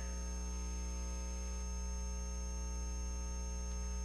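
Steady electrical mains hum with many overtones, and no other sound.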